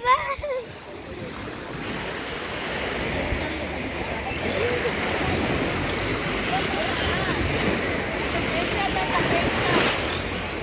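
Shallow sea water washing and lapping around the person filming, a steady noise that builds over the first couple of seconds and holds, with wind on the microphone. A voice trails off at the very start, and faint voices of other bathers come through.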